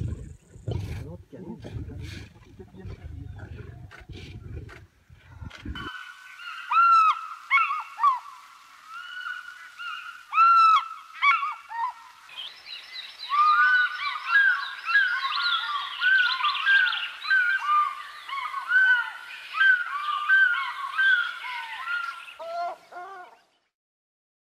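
Low rumbling outdoor noise for the first six seconds, cutting off abruptly. Then bird calls: repeated arching chirps, sparse at first and becoming a dense, overlapping chorus from about halfway through, stopping just before the end.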